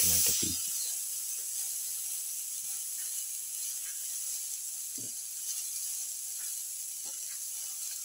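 Tomato pieces frying in hot oil with onions and garlic, a sizzle that is loudest at first as they hit the oil and then settles to a steady hiss. A single soft knock about five seconds in.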